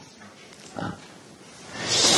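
A man's pause in speech: a faint, brief vocal sound about a second in, then an audible in-breath building near the end, just before he speaks again.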